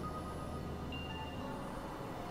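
Experimental electronic synthesizer music: scattered held tones at different pitches come in one after another over a noisy hiss, with a low drone underneath that cuts out about three-quarters of the way through.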